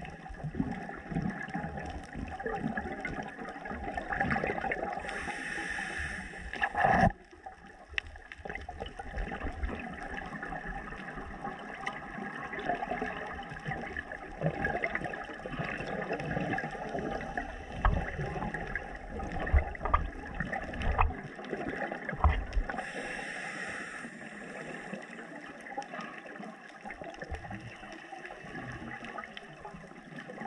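Underwater sound of a scuba diver breathing through a regulator: exhaled bubbles gurgle in two longer bursts, one about five seconds in and another later on, over a steady crackle of reef noise.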